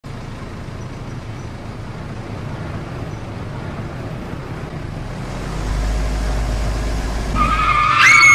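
Car and traffic noise that grows steadily louder, with a deep engine rumble from about five seconds in. Near the end a car's tires start to squeal under hard braking, just before a crash.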